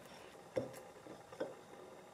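Table knife spreading pâté on a slice of bread: two faint, short scrapes, about half a second and a second and a half in.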